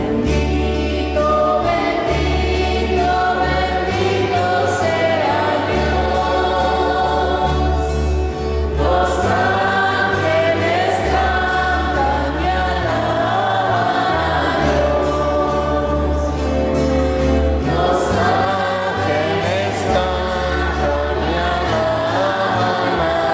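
Church choir singing, accompanied by held low organ notes that change every second or two.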